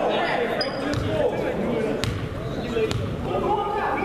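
Basketball bounced three times on a hardwood gym floor, about a second apart: a player dribbling at the free-throw line before the shot. Voices chatter in the gym underneath.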